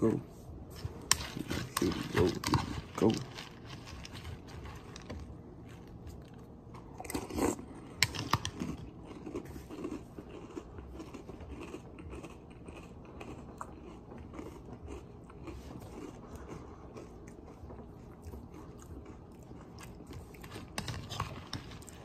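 A person chewing a mouthful of crunchy cereal in milk (chocolate chip cookie dough Krave mixed with dulce de leche Toast Crunch), with many small crunches as it is bitten and ground.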